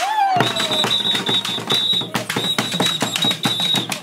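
Acholi dance drums beaten with sticks in a fast, dense rhythm. A short falling cry comes at the start, and a steady high tone sounds over much of the drumming.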